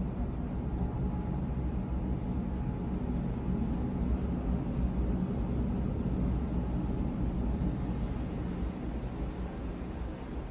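Steady low rumble of cruise ship machinery, with a faint hum under an even hiss.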